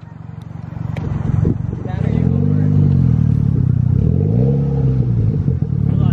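Mitsubishi Lancer Evolution X's turbocharged four-cylinder engine running through an aftermarket titanium exhaust. It builds up about a second in and is then revved twice, the exhaust note rising and falling each time.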